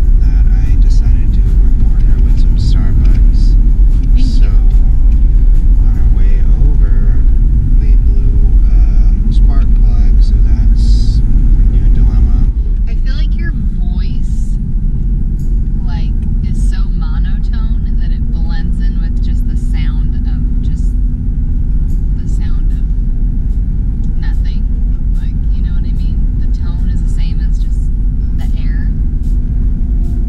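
Road and engine noise inside a moving vehicle's cabin, a steady low rumble, with voices over it. The sound drops in level and changes abruptly about twelve seconds in.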